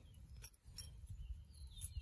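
Faint clicks of a cut-open brass ball valve's two halves being handled, over low room tone, with a faint high falling chirp near the end.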